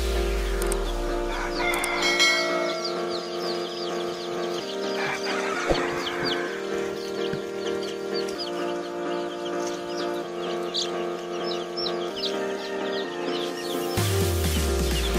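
A brood of baby chicks peeping without pause, many short high cheeps overlapping, over background music with held chords.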